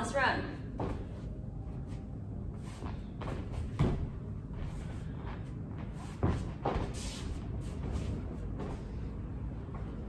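Bare feet thudding on a boxing-ring canvas during shadowboxing footwork and teep kicks: a few separate thumps, the loudest about 4 seconds and about 6 seconds in, over a low steady room hum.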